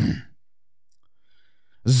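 Mostly silence in a pause between speech: a short breathy voice sound, like a sigh, at the start, then quiet until a man starts speaking near the end.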